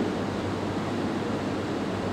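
Steady background hiss with a faint low hum, unbroken and even throughout.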